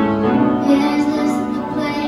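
Music: a child singing sustained notes over instrumental accompaniment.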